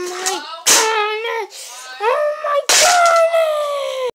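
A child giving three long, drawn-out yells, wordless and sliding in pitch, while toy wrestling figures are knocked over, with two sharp knocks about a second and nearly three seconds in.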